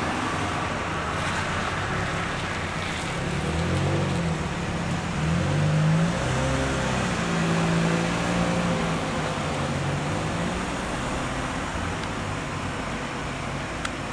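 A car driving past on the street, its engine note growing louder and shifting in pitch through the middle, then fading, over steady road noise.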